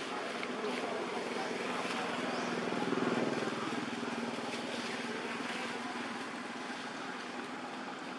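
A motor vehicle's engine passing, growing louder to a peak about three seconds in and then slowly fading.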